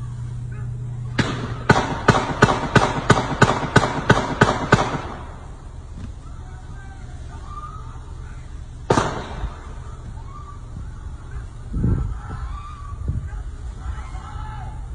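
A police officer's handgun firing a rapid string of about eleven shots over roughly three and a half seconds, then a single further shot about four seconds later.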